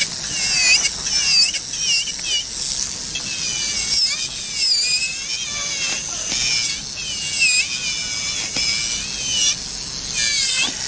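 Electric nail drill with a sanding bit, a high whine whose pitch dips and recovers again and again as the bit is worked over the gel nail surface to roughen it.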